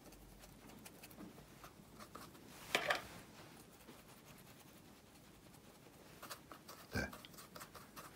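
Faint scratching and dabbing of a small paintbrush working wet watercolour paint in a palette, mixing colours. A short, louder sound comes about three seconds in.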